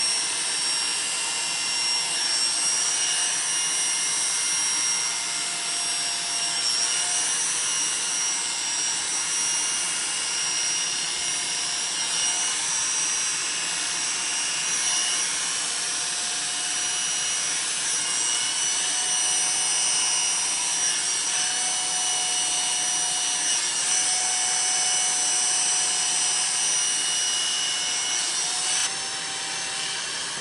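Corded electric hair clippers running steadily as they buzz short hair off a man's head, a constant whine with a faint hiss, dipping slightly in level near the end.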